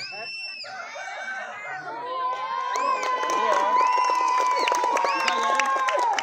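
A group of children shouting and cheering, getting louder about two seconds in, with one voice holding a long, steady high call over the others.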